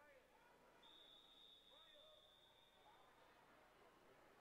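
A faint long whistle blast, one steady high tone about two and a half seconds long, typical of a swim referee's long whistle calling swimmers up onto the starting blocks. Faint distant crowd chatter lies under it.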